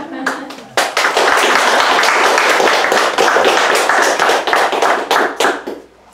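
Audience applauding: many hands clapping together, starting about a second in and dying away near the end.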